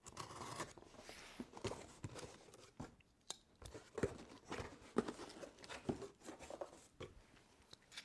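Packing tape on a cardboard box being slit and torn open, then the flaps folded back: a faint, irregular run of scrapes, rips and clicks.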